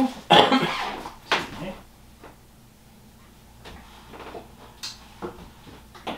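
A man coughs sharply about a third of a second in, then a smaller second burst follows. After that come a few scattered light clicks and knocks of things being handled, over quiet room tone.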